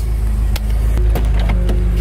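BMW M6's twin-turbo V8 idling steadily while warming up, a loud low hum. A few light clicks sound as the driver's door is opened.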